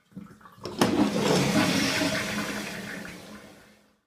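Toilet flush sound effect: a sharp click about a second in, then rushing water that fades away.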